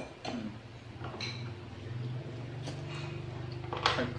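A utensil clicks sharply against a ceramic bowl, followed by a few lighter clicks of chopsticks and spoons and eating noises. From about a second and a half in, a low steady hum lasts about two seconds and stops just before the end.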